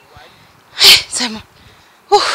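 A person lets out one loud, explosive burst of breath about a second in, followed by a short 'ah'.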